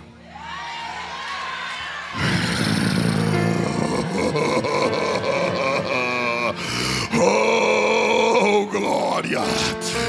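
Large church congregation reacting aloud: voices build for a couple of seconds, then swell into loud, continuous shouting, cheering and laughter from many people, over music playing underneath.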